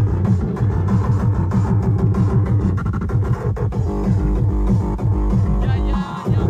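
Loud tekno electronic music with heavy bass and a fast, repeating rhythmic pattern.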